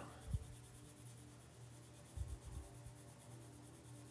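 Stylus tip faintly tapping and stroking on a tablet's glass screen while painting, with a few soft knocks.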